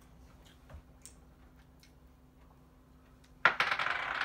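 Dice thrown onto a table about three and a half seconds in, hitting sharply and clattering for about a second and a half.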